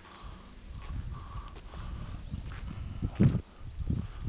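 Low, uneven rumble and knocking on a handheld camcorder's microphone as the camera is carried, with a loud thump a little over three seconds in.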